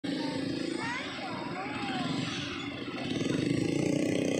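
Motorcycle engine running close by, with people's voices in the crowd rising over it.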